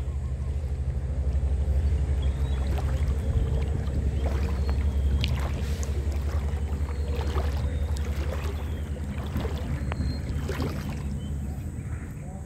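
Water sloshing and splashing in a shallow river, with irregular small splashes over a steady low rumble.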